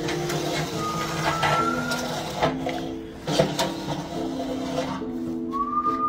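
A man whistling a few high notes, over background music with slow held notes. Sharp knocks and clatter come in the first half.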